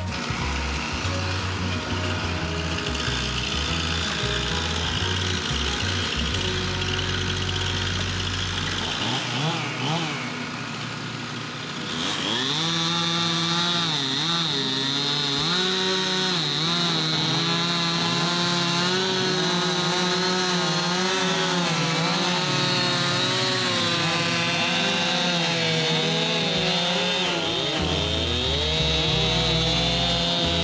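Two-stroke chainsaw engine, high-revving from about twelve seconds in, its pitch dipping and recovering again and again as it cuts into log wood. Before that, a lower engine rumble runs.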